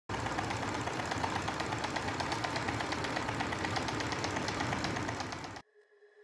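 Small DC motor running a homemade crank-and-syringe linkage, a steady whirring with a fast, even clatter from the moving parts. It cuts off suddenly near the end.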